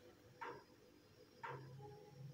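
Near silence with two faint, soft strokes about a second apart: a silicone spatula stirring a watery carrot-and-tomato sauce in a non-stick frying pan.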